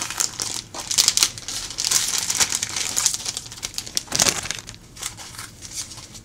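Clear plastic packaging bags of a craft kit crinkling as they are handled and shuffled: a dense crackling that is loudest in the first few seconds and thins out near the end.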